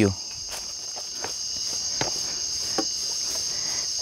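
Night-time crickets and other insects keeping up a steady high-pitched chorus, with a few faint knocks of footsteps on stones.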